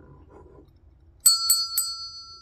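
Brass hand bell with a wooden handle rung three times in quick succession a little over a second in, each clapper strike sharp, leaving a bright ringing tone that lingers and slowly fades.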